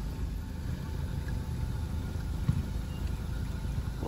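Car engine idling with a steady low rumble, and one brief knock about two and a half seconds in.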